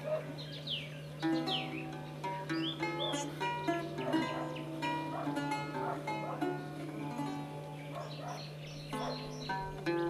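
Lute played solo, a steady run of plucked notes and chords. A few short falling whistles sound about half a second to a second and a half in, over a steady low hum.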